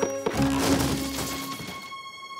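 Cartoon crash sound effect of a wooden door falling flat, starting about a third of a second in and dying away over about a second, over background music.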